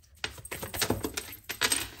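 Tarot cards being handled on a table: a quick, irregular run of light clicks and taps as a card is drawn and laid down among the others.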